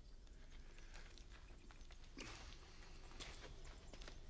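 Near silence in a hushed film scene: faint scattered taps, with two soft swishes about two and three seconds in.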